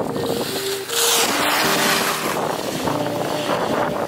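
Wind rushing on the microphone and skis scraping and carving on groomed snow, loudest about a second in, under faint background music with held notes.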